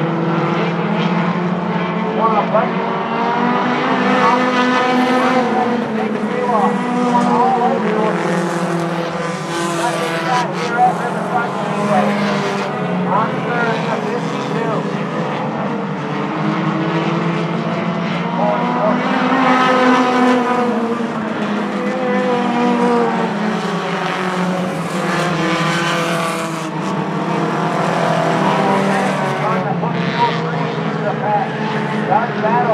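A field of four-cylinder compact short-track race cars running at pace-lap speed. Their engines rise and fall in pitch as the cars pass, swelling several times.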